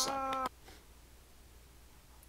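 A person's voice holding one steady high note for about half a second, cut off suddenly, then near silence: room tone.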